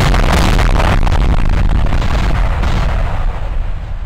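Sound effect of an animated end card: a loud, rumbling crash of heavy impacts and noise that fades out gradually over the last two seconds.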